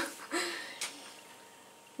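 A short, low voiced murmur just after the start, a faint tap, then quiet room tone.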